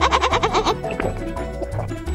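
A woman's quick, high, trilling laugh that stops under a second in, over background music.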